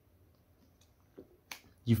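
Near silence in a pause between read sentences, broken by two short soft clicks past the middle, typical lip or tongue noises just before speaking. A voice starts reading near the end.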